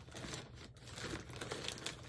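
Faint crinkling and rustling of a thin plastic packaging bag being handled, with scattered soft crackles.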